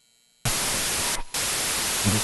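Loud white-noise static, like a detuned TV, cutting in sharply about half a second in after dead silence and breaking off for a split second a little past the middle before resuming.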